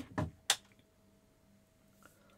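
A single sharp click about half a second in as the reptile egg incubator is switched on, followed by a faint steady tone.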